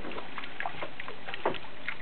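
Rainwater running down a rain chain and splashing into a basin at its foot: a steady trickle with many small drips and plops, the loudest plop about a second and a half in.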